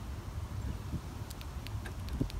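A few faint, light clicks from a car key fob and the keys on its ring being handled, over a low wind rumble on the microphone.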